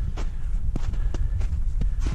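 A hiker's boots crunching on packed snow, about four steps, over a steady low rumble.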